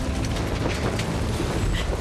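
Film sound effects of a large blaze: a deep continuous rumble with crackling and scattered clicks.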